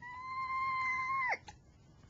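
A high, steady vocal squeal held on one pitch for just over a second, then dropping sharply in pitch as it cuts off, followed by a small click.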